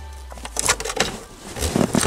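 Handling noise of a gloved hand rubbing and scraping against a car's floor pan and seat trim: a few short scrapes and knocks in the middle and again near the end, over a faint low hum.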